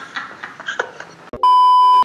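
Brief laughing, then from about the middle a loud, steady high-pitched censor bleep tone that cuts in and out abruptly, covering the answer to a risqué question.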